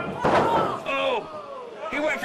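A wrestler's body hitting the ring canvas: one loud slam about a quarter second in, with the ring ringing briefly after it, followed by voices.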